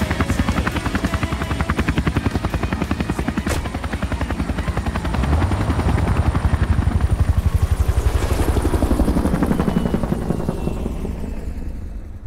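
A helicopter rotor chopping steadily and rapidly, easing off slightly near the end.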